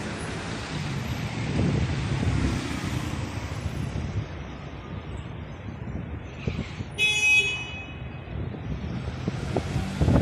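Street traffic, with cars driving past close by, the loudest passing about two seconds in. A short car horn beep sounds about seven seconds in.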